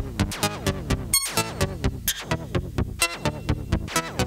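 Welson Syntex synthesizer running its "random music" function: a quick, even stream of short synth notes, about four a second, each dropping in pitch just after it starts.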